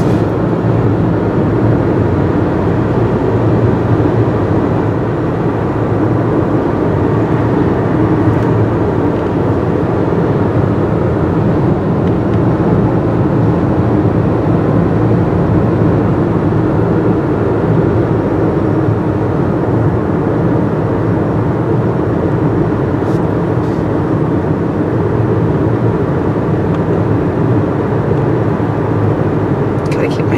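Steady road and engine noise of a car driving at speed, heard from inside the cabin, unchanging throughout.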